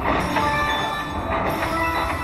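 Slot machine bonus win tallying up: bright chiming tones and coin-shower effects that start again about every second and a half as each collected prize is added to the win meter.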